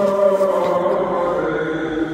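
Orthodox chanting of an akathist hymn in Romanian: a voice drawing out a long sung note whose pitch shifts slowly.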